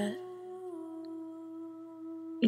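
Humming: one long held note that steps slightly lower in pitch under a second in.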